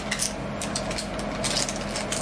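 Plastic snack bag crinkling in irregular rustles as a hand reaches in to take some out.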